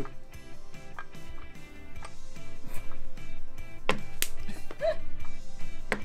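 Background music, with a few sharp clinks and knocks from glass ramekins being lifted out of a glass baking dish of water and set down on a cutting board. The loudest two come about four seconds in.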